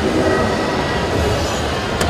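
Steady background din of a large, busy indoor hall, a dense mix of crowd hubbub and machine noise with no single sound standing out.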